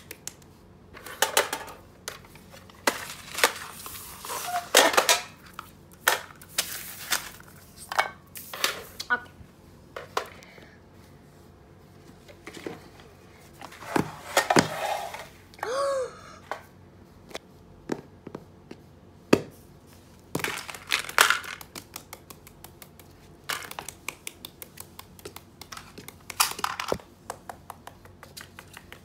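Hands handling small toys, boxes and plastic packets on a hard floor: irregular taps, clicks and crinkling plastic as items are picked up and set down. A short pitched sound comes about halfway through.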